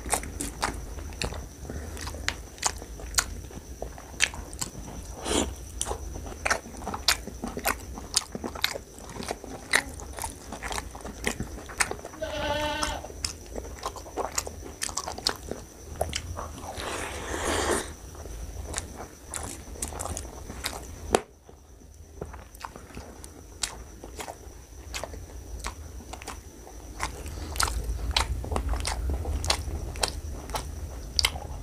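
Close-miked mouth sounds of eating rice and mutton curry by hand: wet chewing, lip smacks and quick clicky bites in an irregular run.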